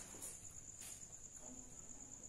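Quiet room with a faint, steady high-pitched trill and a couple of soft marker strokes on a whiteboard.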